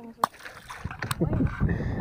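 A small guapote cichlid tossed back into lake water, making a brief splash at the surface near the start.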